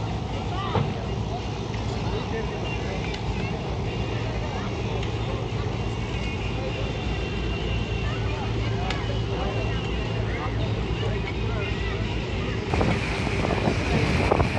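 Steady low drone of a boat engine, with faint voices over it. About a second before the end the sound changes to wind buffeting the microphone.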